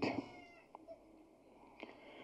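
A man's voice through a microphone trails off at the start, then a pause of near silence with a couple of faint clicks.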